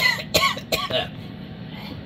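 A man coughing a few times in the first second, over the steady low hum of a running air fryer's fan.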